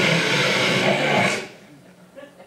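A long, hard sniff straight into a handheld microphone, loud and hissing. It lasts about a second and a half and cuts off sharply: a mimed snort of a line of cocaine.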